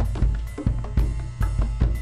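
Tama drum kit playing a bossa nova-based percussion groove, bass drum and snare strikes in a steady rhythm, joined by hand drums (bata drum and bongos).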